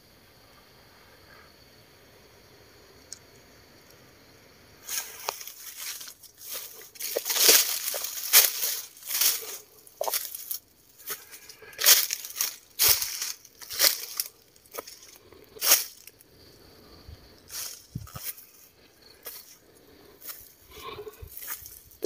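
Footsteps crunching through dry fallen leaves and twigs, starting about five seconds in as irregular steps, one or two a second.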